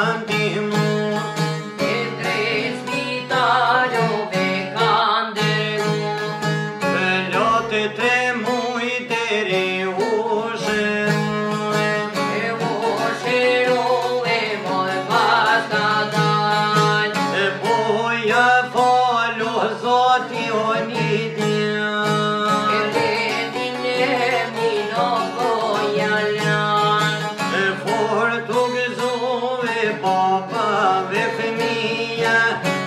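Two Albanian long-necked lutes, a çiftelia among them, played with fast, steady plucking while male voices sing an Albanian folk song in turn, with long wavering held notes.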